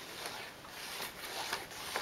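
Faint rustling of a sheet of construction paper being handled and shifted in the hands, with a few light ticks.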